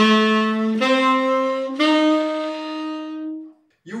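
Tenor saxophone playing slow, held notes up a G7 arpeggio: the chord tones written B, D and F, each a step higher than the last. The top note is held longest and fades out a little over three seconds in.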